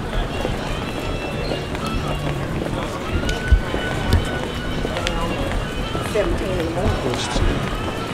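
Busy airport concourse ambience heard while walking: a steady hubbub of travellers' voices over the noise of the terminal, with low thumps of footsteps and camera handling now and then.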